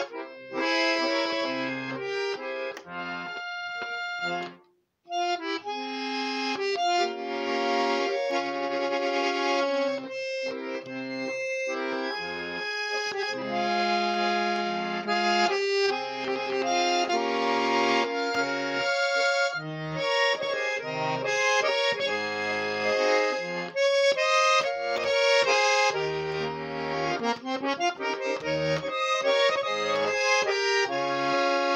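Tula garmon, a Russian button accordion, playing a folk-song tune in the garmon's 'upper minor' (E minor): a sustained reed melody over bass-and-chord accompaniment, changing with the bellows. The playing breaks off briefly about five seconds in, then carries on.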